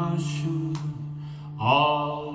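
Live acoustic music from a steel-string acoustic guitar and cello, with long held wordless notes, one gliding upward about one and a half seconds in.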